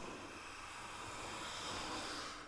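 A hand plane taking a shaving along the edge of a wooden board: one steady hiss of the blade cutting, building slightly toward the end. It is one of a run of strokes that plane the edge hollow.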